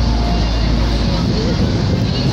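Street background noise: a loud, steady low rumble with faint voices in it.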